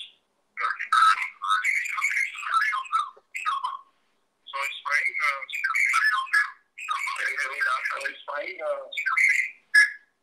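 A person's voice coming over a poor video-call audio link, thin and tinny, with the lows missing, and broken up so that no words come through clearly.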